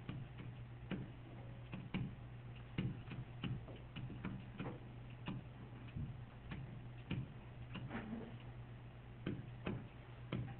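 Pen stylus tapping and clicking on a tablet screen while equations are handwritten: irregular sharp taps, about one or two a second, over a steady low electrical hum.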